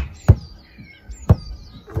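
Rugby ball leaving the hands on a pass with a sharp slap, then two dull thuds about a second apart as it lands and bounces on the lawn. Birds chirp faintly in the background.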